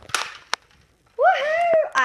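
A sharp knock and a short scuffle at the start, a single click about half a second in, then a child's high voice calling out one long, gliding vowel near the end.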